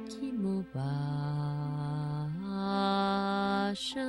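A single voice chanting in long held notes like a mantra, stepping up in pitch about halfway through, with a hissed consonant near the end.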